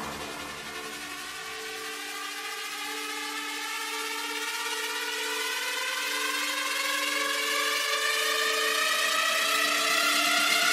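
Breakdown in a melodic techno track: the beat and bass drop out, and a synth riser climbs slowly in pitch and grows louder over a held synth chord, building toward the next drop.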